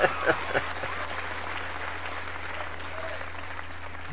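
Stand-up comedy audience applauding a punchline: a steady wash of clapping at an even level.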